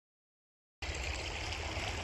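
Silence, then about a second in the sound cuts in on a steady rush of a small creek flowing, with a low rumble underneath.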